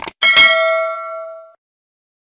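A short click sound effect, then a bright notification-bell ding that rings with several tones and fades out over about a second.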